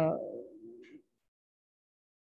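A woman's drawn-out hesitation sound, "uhh", trailing off and fading out about a second in, followed by silence.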